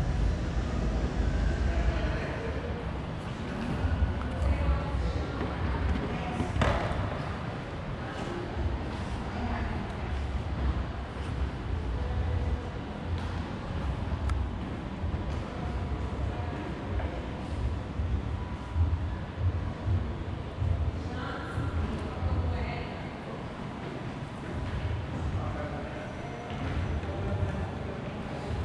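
Room ambience in a large exhibition hall: faint, indistinct voices in the background over a steady low rumble, with a few soft knocks.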